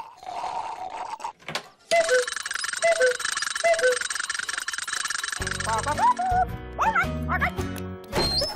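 A clockwork cuckoo bird on a folding arm calling three times, each a two-note falling 'cuck-oo', over a steady high hiss. From about five seconds in, cartoon music with gliding notes takes over.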